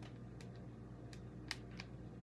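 A few faint, sharp clicks from handling a hot glue gun and pressing cheesecloth-like fabric onto a spider web, the loudest about one and a half seconds in, over a steady low hum.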